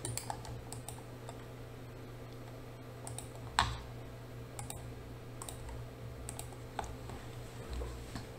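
Scattered light clicks of a computer keyboard and mouse, with one louder click about three and a half seconds in, over a steady low hum.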